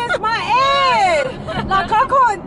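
Women's voices singing loudly together in a car, in long notes that slide up and down.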